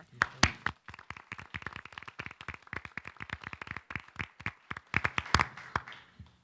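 A small room of people applauding, a scatter of separate hand claps that thins out and stops shortly before the end.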